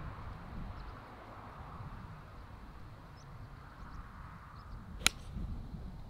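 A single sharp click about five seconds in: an iron striking a golf ball off the tee.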